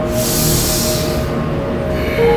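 A deep breath drawn in, a strong hiss lasting about a second, over soft background music with held tones.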